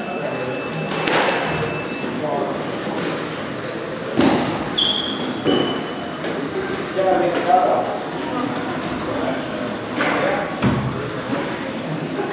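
Squash rally: a handful of sharp ball strikes off racket and walls, ringing in the hall, with brief sneaker squeaks on the wooden court floor.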